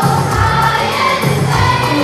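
A group of children singing together into stage microphones, with a regular beat behind the voices.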